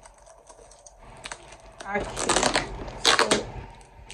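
Packing tape being picked at and peeled off a cardboard parcel box by hand: light scratching and clicks, then two spells of rapid crackling tearing, about two seconds and three seconds in.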